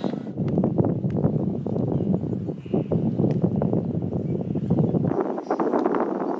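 A cloth rustling and rubbing over a solar panel's glass in a continuous, crackly scrubbing noise. A low rumble of wind on the microphone runs under it and cuts off about five seconds in.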